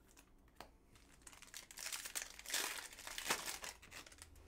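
The foil wrapper of a football trading-card pack being crinkled and torn open by hand. A few light clicks come first, then a dense crinkling that starts about a second in and runs for nearly three seconds.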